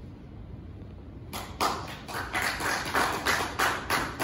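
Hand clapping, close and loud, starting about a second in and going on evenly at about four claps a second.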